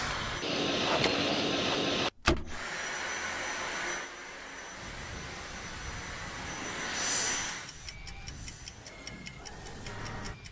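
Dyson cordless stick vacuum running with a steady suction hum that breaks off briefly about two seconds in and swells again around seven seconds. From about eight seconds a clock ticks rapidly and evenly.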